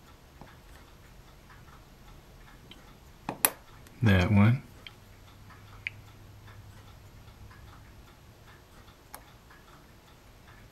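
A chisel blade cuts through the attachment point of a photo-etched brass fret with one sharp click about three and a half seconds in. A brief hum of voice follows, and faint ticking runs in the background.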